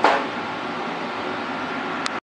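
Steady fan-like background noise, with one short sharp sound right at the start.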